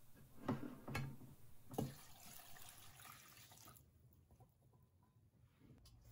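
Rice-washing water poured from a bowl into a steel pot of cut bamboo shoots, a faint splashing and dripping that dies away about four seconds in.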